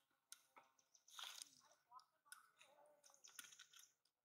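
Near silence: faint background with scattered soft clicks and a few brief, faint pitched calls.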